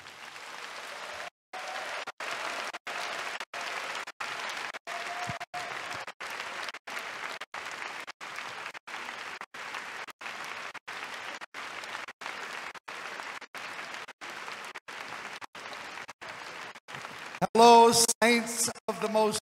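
A large audience applauding steadily. A man's amplified voice begins just before the end.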